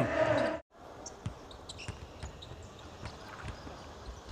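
Basketball bounced on a hardwood court: faint, short, irregular bounces over low arena hubbub. They follow a sudden break under a second in, where a louder voice cuts off into a moment of silence.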